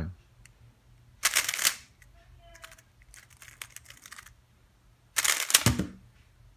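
A plastic 3x3 speedcube being turned: short bursts of quick clicking as its layers are snapped through the moves, one burst about a second in and a louder one near the end, with fainter clicks in between. Near the end the cube is set down on the mat.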